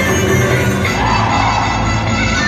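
Loud, continuous Black Sea horon folk dance music accompanying the dancers.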